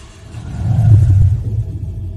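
Low rumbling boom of an outro sound effect that swells to a peak about a second in and then fades, with faint steady tones ringing above it.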